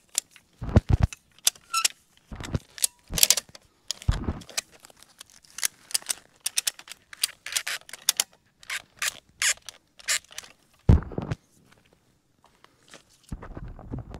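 Ratchet tie-down straps being cinched around a tree trunk: irregular clicks from the ratchet and metal rattling of the strap hardware, with a few dull knocks.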